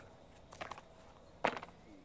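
Quiet background with one short, sharp click about one and a half seconds in.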